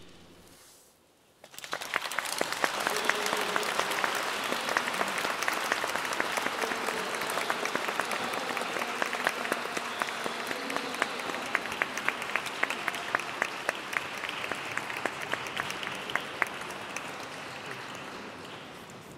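Audience applauding: after about a second and a half of quiet, the clapping breaks out and carries on steadily, easing a little near the end.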